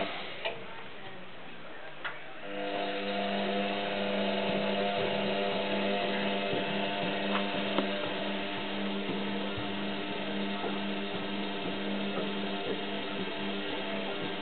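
Front-loading washing machine running with a steady motor hum that pauses briefly near the start and picks up again about two and a half seconds in.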